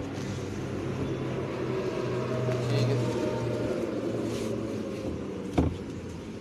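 Car engine idling, heard from inside the cabin, swelling slightly around the middle, with one sharp click near the end as the clutch pedal is worked.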